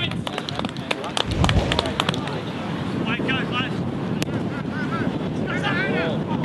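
Outdoor football-match ambience: wind buffeting the microphone, with a stronger gust in the first couple of seconds, and short distant shouts from players.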